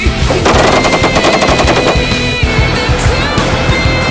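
Rapid automatic gunfire, one burst of about two seconds starting just after the start, over loud rock music.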